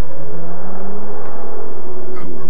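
Volvo 850 GLT's five-cylinder engine running as the car speeds away. Its pitch rises slightly through the first second, then drops back.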